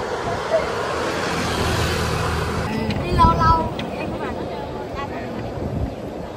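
Steady wind and road noise from riding in an open-sided passenger cart, with the sound changing about three seconds in and a few brief voices heard then.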